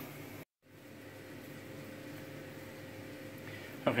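A steady mechanical hum, like a fan running, with a faint steady whine in it. It cuts out completely for an instant about half a second in, then resumes unchanged.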